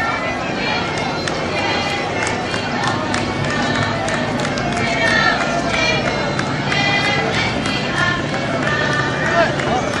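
Outdoor folk music from a marching parade: fiddles playing and voices singing, with crowd chatter underneath.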